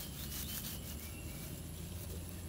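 A rope tether rustling and rubbing as it is wrapped and knotted around a tethering stake in grass, against a steady low outdoor background.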